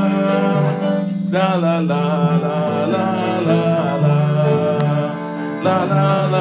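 Music: a song with acoustic guitar and a singing voice.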